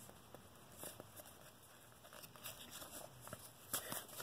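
Faint handling of a stack of trading cards: cards sliding and flicking against one another in the hands, with soft scattered ticks and a slightly louder rustle near the end.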